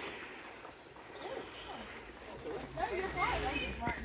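Indistinct voices of people talking nearby, mostly in the second half, over a faint low rumble.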